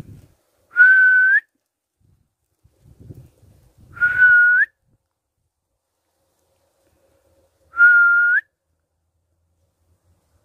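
Three identical clear whistled notes, about three and a half seconds apart, each held level for about half a second before flicking up in pitch at the end.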